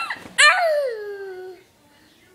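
A toddler's high-pitched squealing: a short rising squeal at the start, then a louder one about half a second in that slides down in pitch for about a second and fades.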